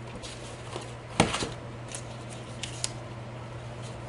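A sharp plastic clack about a second in, as a hand-held circle paper punch is set down on a desk, followed by a few light clicks of paper and card being handled, over a steady low hum.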